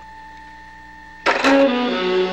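A faint steady electronic hum with a few held tones, then about a second in a loud brassy jazz music cue with saxophone and brass cuts in abruptly.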